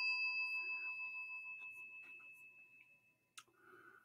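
A single bell-like chime, struck just before, ringing on with a few clear high tones and fading away over about three seconds. A faint click follows near the end.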